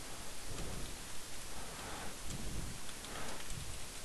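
Faint taps of computer keyboard typing over a steady hiss of microphone and room noise.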